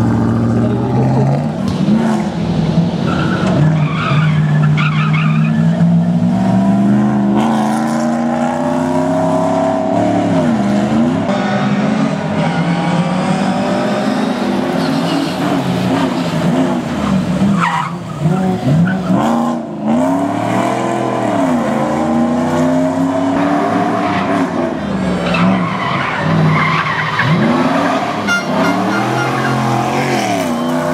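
5-litre V8 of a Mercedes-Benz SLC rally car driven hard, its revs repeatedly climbing and dropping through gear changes and corners. Tyres squeal as the car slides through the bends.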